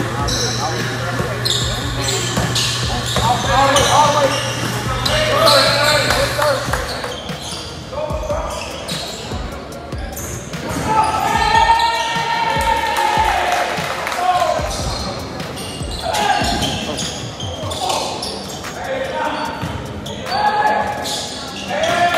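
Live basketball game sound in a gym: a basketball bouncing on the hardwood court, with players and spectators calling out. A steady low hum runs under the first few seconds and then stops.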